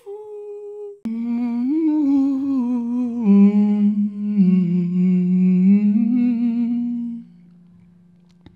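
A voice humming a slow melody of long held notes that glide gently in pitch. About seven seconds in it falls away to a quiet, low, steady drone.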